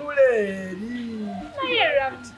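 A person's drawn-out, whining, cat-like vocalisation with gliding pitch, followed near the end by a shorter falling squeal, made in a coaxing, playful way.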